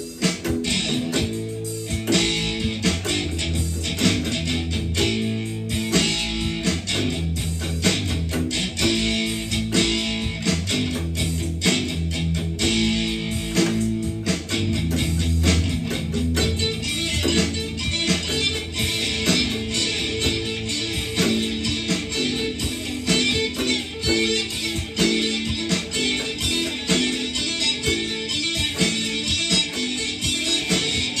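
A red electric guitar and an acoustic bass guitar playing an original jam together, the bass holding steady low notes under the guitar's strumming and picked lines.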